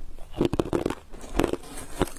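Crushed ice being chewed close to a lapel microphone, crunching in three bursts.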